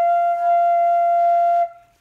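Homemade six-hole transverse flute sounding one long, steady high F (F5), the octave above its low F fundamental and the top note of its F major scale. It stops about 1.7 seconds in. The tuner reads the note as the correct F.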